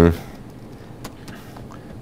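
Quiet room tone in a large room, with a few faint clicks.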